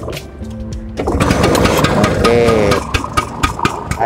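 A 1963 Vespa VBB scooter's 150 cc two-stroke engine is kick-started and catches about a second in. It then runs with a fast, even firing, sounding smooth.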